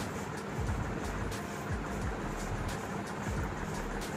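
A fingertip rubbing and scratching in the ear close to the microphone: a continuous rustling with scattered small clicks and irregular low rumbles.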